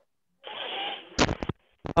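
A short burst of muffled, crackly noise from a contestant's microphone coming through a video call, then three or four sharp clicks.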